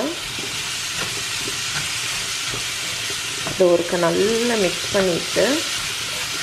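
Sliced onions sizzling in hot oil in a stainless steel kadai, stirred with a wooden spoon: a steady frying hiss with light clicks of the spoon against the pan. A voice is heard briefly a little past halfway.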